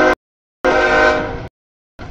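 CSX freight locomotive's multi-chime air horn sounding a short blast and then a longer one, the end of the crossing signal as the locomotive reaches the grade crossing.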